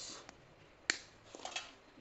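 A cutting tool snips through the insulation of a four-wire telephone cable while it is being stripped: one sharp click about a second in, then a few fainter clicks as the wires are handled.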